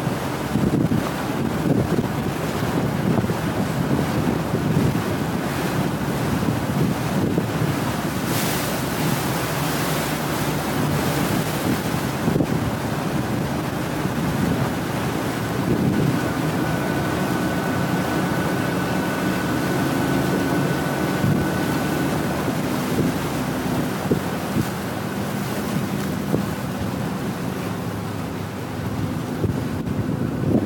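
Motorboat under way: steady wind buffeting on the microphone over the boat's engine and water rushing along the hull, with a faint thin whistle for a few seconds in the middle.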